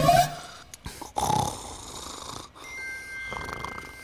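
A man snoring in his sleep: one snore rising in pitch at the start and another about a second in. Faint high held tones come in during the second half.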